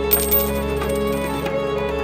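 A metal coin spinning on its edge, giving a bright metallic ringing with rapid rattling clicks that stops about a second and a half in. String music plays underneath.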